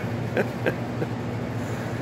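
A man laughing in a few short breathy chuckles, over a steady low hum in the background.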